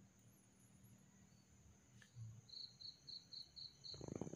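Near silence with faint insect chirping: a quick run of six short, high, evenly spaced chirps in the second half, over a thin steady high tone.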